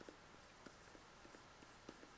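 Near silence with a few faint ticks and scratches of a stylus drawing strokes on a graphics tablet.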